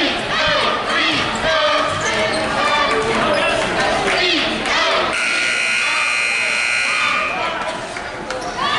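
Voices and shouts echo in a gymnasium, then a basketball scoreboard horn sounds steadily for about two and a half seconds, starting about five seconds in.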